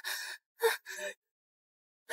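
A woman gasping in pain from a stomach ache: three short, breathy gasps in quick succession within about the first second.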